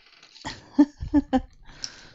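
A few short knocks and clicks of plastic diamond-painting supplies being handled as a pointy plastic drill tray is picked up, followed by a brief rustle near the end.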